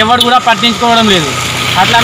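A man speaking in Telugu. About two-thirds of the way through, a steady low hum comes in under his voice.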